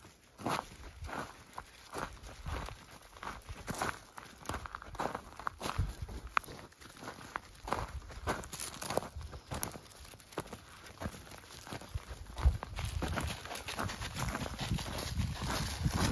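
Footsteps crunching on gravel and dry leaves, an irregular run of short crunches about two a second.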